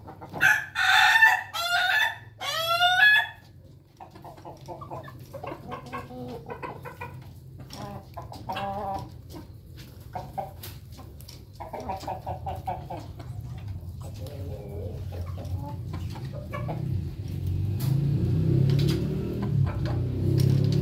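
A rooster crows in one loud call of four rising-and-falling syllables in the first few seconds. Hens follow with scattered soft clucks, and a low rustling noise builds near the end.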